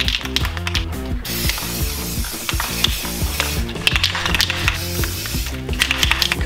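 Aerosol can of glow-in-the-dark spray paint hissing in one long spray of about four seconds, starting about a second in.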